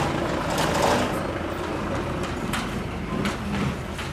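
Street noise with a vehicle engine running, mixed with a few short clicks and knocks.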